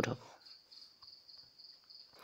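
A faint, steady high-pitched tone holding in the background after a spoken word ends at the very start.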